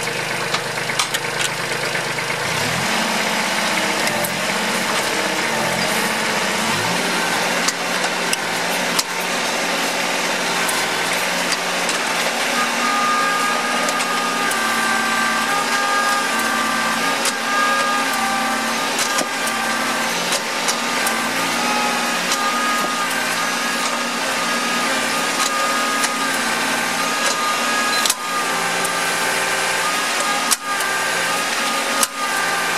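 Tractor diesel engine running under hydraulic load, its speed stepping up about two and a half seconds in and again around seven seconds, with a steady hydraulic whine in the second half. The hydraulic leg is being cycled again and again against an unreinforced concrete slab, and a few sharp clicks come as it works the crack apart.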